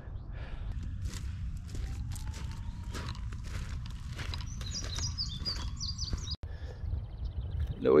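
Footsteps crunching through dry corn-stalk residue in an irregular run of short crackles, with a bird chirping a quick series of short high notes about five seconds in.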